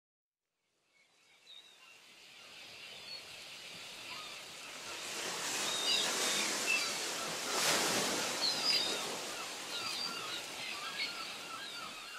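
Seagulls calling, many short cries, over the steady wash of surf. The sound fades in from silence about a second in, and a wave surges loudest near the middle.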